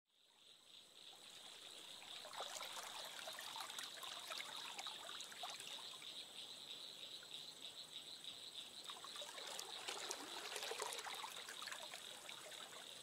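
Faint trickling, babbling water that fades in over the first couple of seconds, full of small droplet-like clicks, with a thin, steady high tone behind it.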